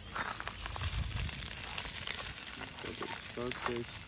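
Sausages sizzling in a frying pan on a portable gas stove, with light clicks as chopsticks turn them against the pan.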